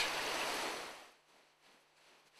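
Steady outdoor background hiss that fades out about a second in, followed by near silence.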